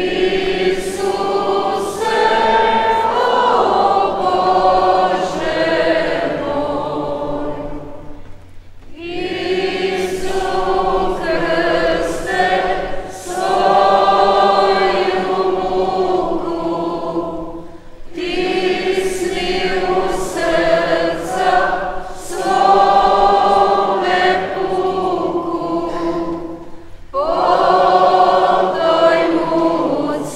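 A choir singing a hymn in long phrases, with a brief breath between phrases about every nine seconds.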